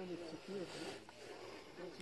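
Faint, indistinct voices of people talking in the background.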